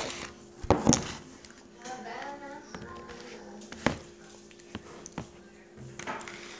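A few sharp knocks and taps of objects being handled on a table, the loudest about a second in and another near the four-second mark, over a steady low hum, with a faint voice in the background.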